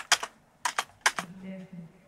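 Four or five sharp computer keyboard clicks in the first second, then, from about a second in, a quiet recorded vocal plays back faintly: a rap doubler track in the session.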